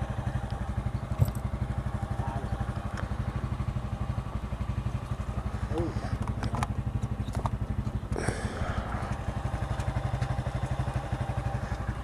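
Yamaha XT 660's single-cylinder engine idling steadily, with a few light clicks over it.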